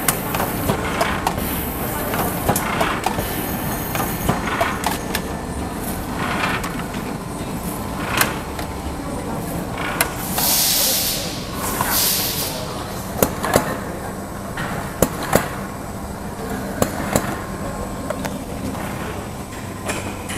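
Automatic cartoning machine running: a steady mechanical rumble with repeated sharp clicks and knocks from its moving parts, and two short bursts of hiss about ten and twelve seconds in.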